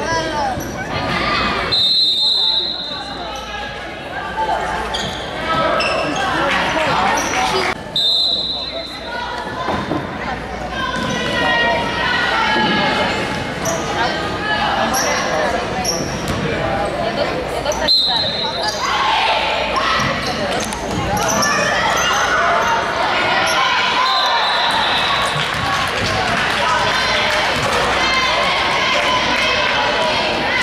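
Spectators talking and calling out in a large gym, with a basketball bouncing on the hardwood court. A referee's whistle sounds in short high blasts three times, about two, eight and eighteen seconds in.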